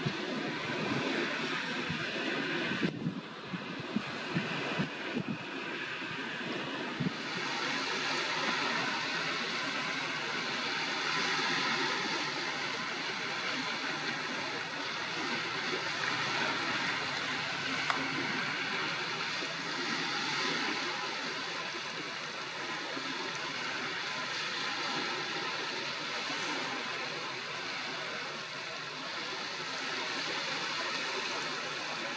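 Steady shoreline background: small waves lapping and wind, a continuous even noise with no distinct bird calls. A few sharp clicks fall in the first several seconds, and the noise grows slightly louder about seven seconds in.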